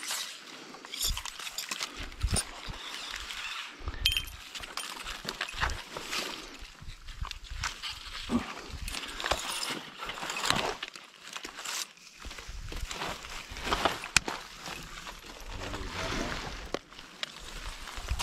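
Redwood boughs and brush rustling and twigs snapping as someone clambers through slash, with irregular cracks, knocks and scrapes throughout.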